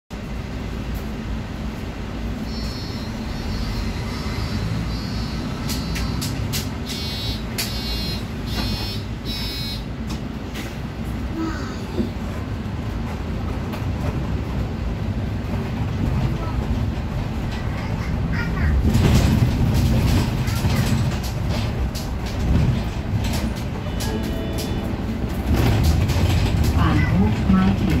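Interior rumble of a city bus driving, engine and road noise, which grows louder about two-thirds of the way in. In the first third a series of short electronic beeps sounds in groups.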